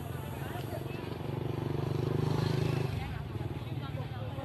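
An engine running close by, with crowd chatter on top. The engine grows louder in the middle and drops back sharply about three seconds in.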